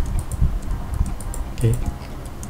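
Scattered light clicks from a computer keyboard and mouse, with a few dull low knocks in the first second.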